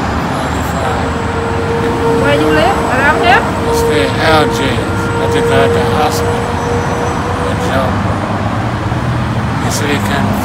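A man talking over constant road traffic noise. A steady hum comes in about a second in and stops about eight seconds in.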